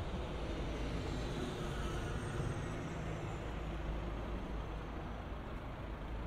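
Road traffic on a multi-lane city street: a steady rumble of engines and tyres from passing cars and a bus, with an engine passing about two seconds in. A faint high whine sinks slowly in pitch through the first few seconds.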